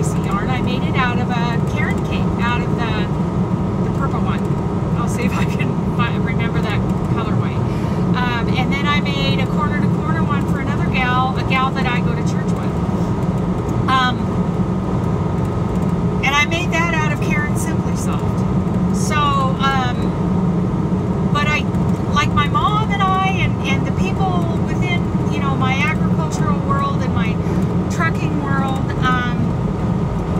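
Steady engine and road drone inside the cab of a moving semi-truck, with a woman talking over it.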